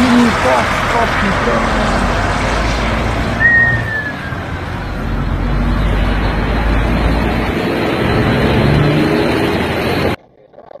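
Steady car noise mixed with voices, with a short whistle-like tone falling in pitch about three and a half seconds in.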